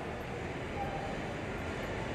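Steady, even background noise of a large indoor space, a continuous rumble and hiss with no distinct events.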